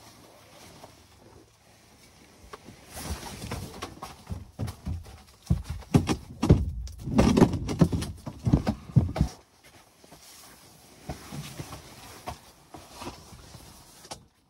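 Irregular knocks, thumps and rustling as gear is handled and moved around inside an insulated pop-up ice-fishing shelter, busiest in the middle and quieter near the end.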